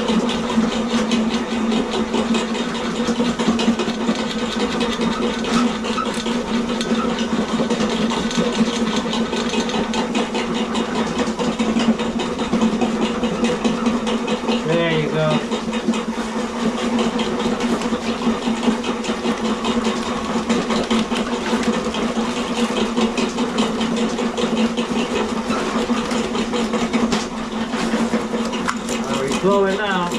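Electric sewer drain-cleaning machine running steadily with a low hum, spinning its steel snake cable through a main sewer line clogged with thick toilet paper on a second pass.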